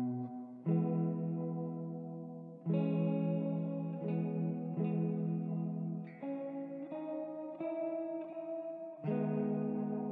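Slow, calm ambient instrumental on a single clean guitar played through effects. Sustained, ringing chords are struck every two to three seconds, with single notes picked in between.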